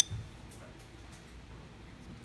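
A single sharp clink right at the start, then quiet room tone with a few faint soft ticks as crumbled cooked sausage is tipped from a glass bowl onto lasagna noodles.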